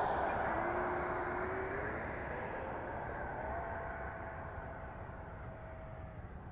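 Radio-control ducted-fan model jet on its takeoff run, heard from a camera riding on the plane: a rush of air with a fan whine that rises in pitch over the first two seconds, then holds a higher steady note. The sound fades gradually.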